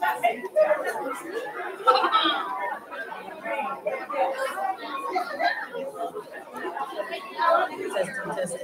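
Indistinct chatter of many people talking at once, with one voice rising above the rest about two seconds in.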